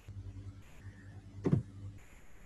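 Low steady hum with one brief, sharp sound about one and a half seconds in.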